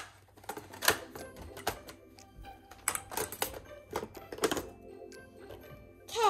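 Irregular plastic clicks, taps and knocks as a toy makeup palette and a clear plastic makeup case are handled and opened, with faint music underneath.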